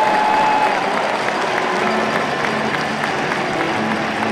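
Handball arena crowd cheering and applauding a home goal, a steady wash of clapping and shouting.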